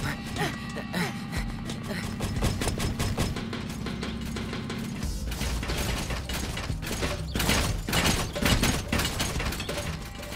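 Cartoon robots' mechanical clanking steps, a dense run of clicks and knocks, mixed with chase music; a low steady hum cuts off about halfway through.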